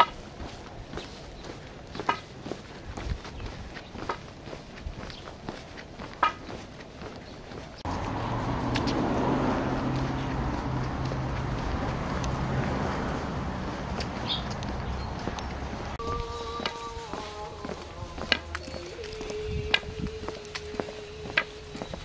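Footsteps crunching along a dirt track. Then a steady low hum and rushing noise, and near the end a few held tones that step down in pitch, like a slow melody.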